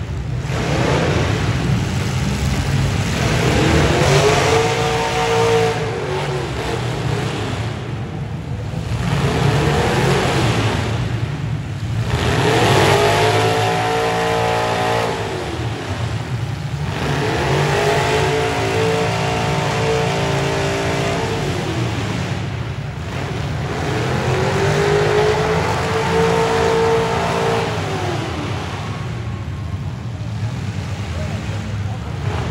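Demolition derby vehicle engines running over a steady low rumble. One engine revs hard and falls back several times, each rise and fall lasting two to three seconds.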